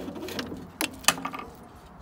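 Two sharp metal clicks about a second apart, near the middle, as the Worcester Greenstar boiler's fan and burner assembly is twisted on its bayonet lugs. Under them runs a faint low hum.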